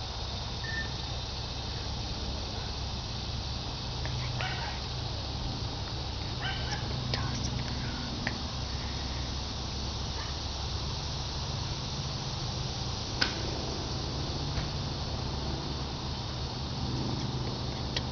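Steady outdoor background hiss with a low hum underneath, broken by a few faint, brief sounds and a single sharp click about 13 seconds in.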